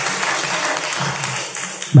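Recorded applause played by the learning website as a reward on finishing the exercise: steady clapping that cuts off near the end.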